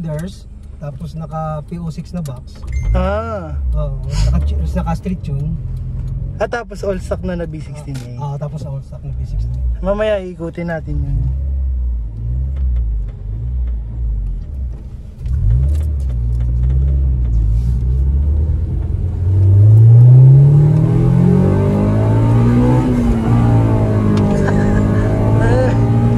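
Honda Civic SiR's B16A engine heard from inside the cabin while driving: a low steady engine drone, then about 19 s in it revs up hard under acceleration, the pitch climbing steeply to the loudest point, and holds at higher revs with more road and wind noise.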